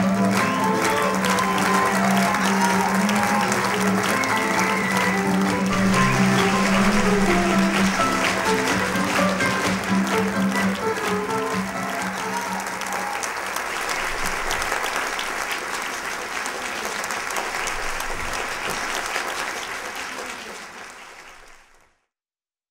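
Theatre audience applauding over music. The music's held notes stop a little past halfway, leaving the applause, which fades out near the end.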